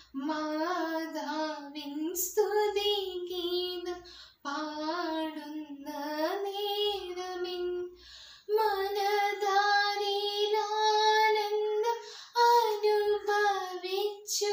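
A girl singing a Christian devotional song solo and unaccompanied, in phrases of two to four seconds with short breaths between. About halfway through she holds a long, steady note.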